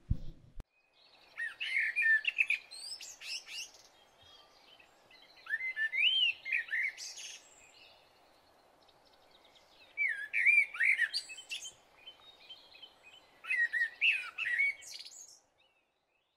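Birdsong: quick, curving high chirps in four short phrases a few seconds apart, over a faint steady background noise.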